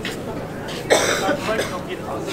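A single short cough about a second in, over a background of people's voices.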